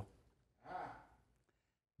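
A man's single short breath, taken about half a second in and lasting about half a second; otherwise near silence.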